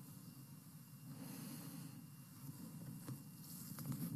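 Faint rustling and breathing as a man pulls a disposable surgical face mask off his face, over steady low background noise, with a few soft clicks near the end.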